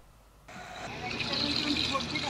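Near silence for a moment, then steady outdoor background noise fades in, with faint voices near the end.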